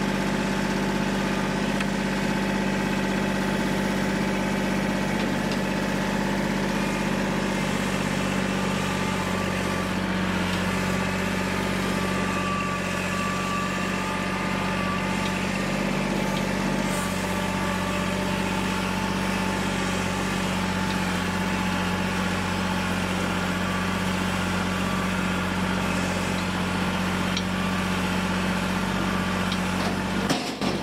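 Engine running steadily at an even speed, its note shifting slightly about eight and seventeen seconds in.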